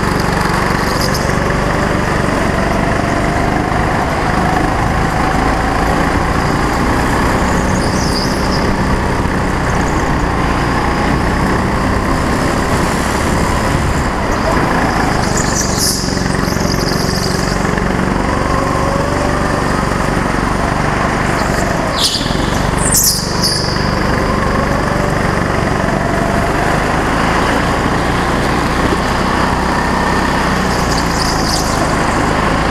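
A go-kart's small petrol engine heard from on board, its pitch rising and falling as the driver accelerates and lifts through the corners. A few brief high-pitched bursts come through, and there is a sharp knock about two-thirds of the way in.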